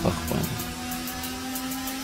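Soft background music of steady, held tones, heard alone in a break in the speech.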